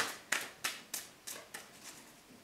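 A tarot deck being shuffled by hand: a run of about seven sharp card slaps, roughly three a second, the first the loudest.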